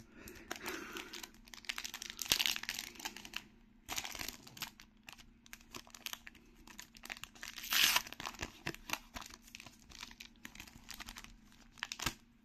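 Foil-lined trading card booster pack crinkling and being torn open by hand, in many small scattered crackles, with a louder burst about eight seconds in.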